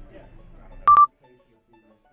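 A short, loud electronic beep, one steady high tone lasting a fraction of a second about a second in, clicking on and off; the faint room sound before it cuts out abruptly when it ends.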